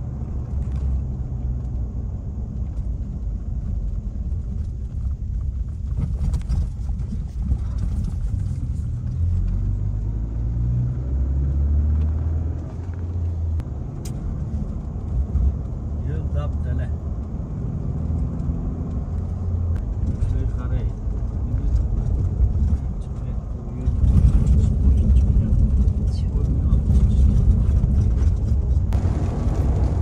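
Car cabin road noise while driving: a steady low rumble of engine and tyres, growing louder and rougher about two-thirds of the way through.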